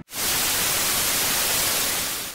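Loud, steady TV-static hiss used as a glitch transition effect, starting abruptly just after a split-second cut to silence.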